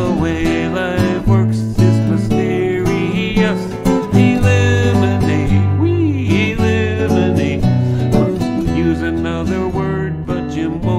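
Nylon-string classical guitar played as a song accompaniment, with bass notes changing about every second, and a man's voice singing along in places.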